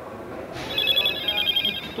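An electronic ringing tone: a fast, high, trilling ring lasting a bit over a second, starting about half a second in.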